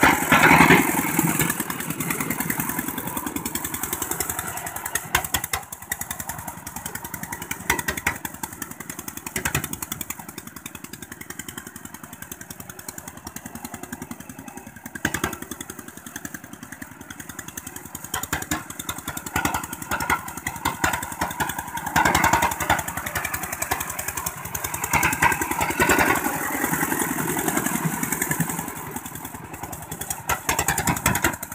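Single-cylinder diesel engine of a two-wheel walking tractor running steadily under load as its cage wheels till a flooded paddy. It is loudest at the start, fades somewhat in the middle as the machine moves away, and grows louder again about two-thirds of the way through.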